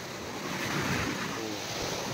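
Small waves breaking and washing up on a sandy beach: a steady rush of surf that swells a little about halfway through.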